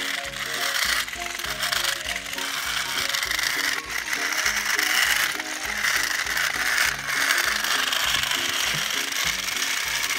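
Upbeat background music with a bouncing bass line, over the steady whir and gear rattle of battery-powered TrackMaster toy train motors as the two engines push against each other.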